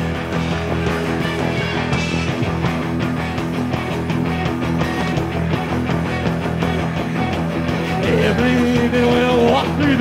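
Live rock band playing loud and steady on electric guitar, electric bass and drums in an instrumental stretch of the song. Near the end a held, wavering note bends upward.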